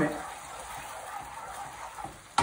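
Spaghetti with olive oil and starchy pasta cooking water sizzling steadily in a frying pan as it is stirred over the heat, the pasta being finished in the pan so its starch cooks out.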